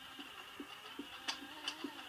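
Quiet cartoon soundtrack heard through a TV speaker: a run of short, low blips, with two sharp clicks in the second half.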